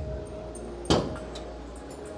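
A single sharp click about a second in, from a hand pressing on the charging-port flap set into the electric car's front panel, over a steady low hum in the background.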